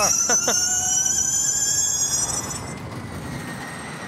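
Gen2 Formula E car's electric drivetrain whining, a high whine of several tones rising slowly as it accelerates. About two and a half seconds in it falls away to quieter track noise with a faint steady tone.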